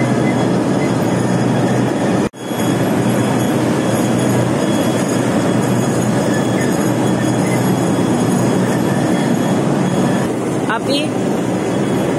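Tea-factory processing machinery running with a loud, steady mechanical rumble around a conveyor belt carrying dried tea. The sound cuts out for an instant about two seconds in.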